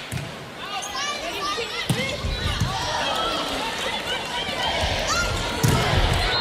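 Sneakers squeaking over and over on a hardwood volleyball court as players move through a rally, over a steady background of arena noise. The ball is struck with a sharp smack about two seconds in and again, louder, near the end: an attack at the net.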